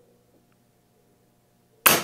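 Air Venturi Avenge-X .25-calibre pre-charged pneumatic air rifle firing once near the end: a single sharp crack with a short decaying tail, sending a heavy pellet through a chronograph.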